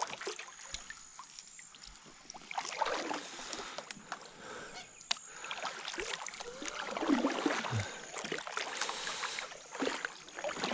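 Kayak paddle strokes in calm water: the blade dipping and pulling, with drips and small splashes, in two longer spells of strokes, the second about six seconds in.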